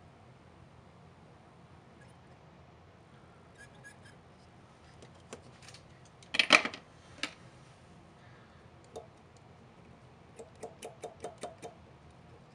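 Small metal hand tools clicking and clattering on a workbench: a sharp clatter about six and a half seconds in, a couple of lighter clicks after it, and a quick run of about eight light ticks near the end as a thin metal tool is brought against the spring terminal.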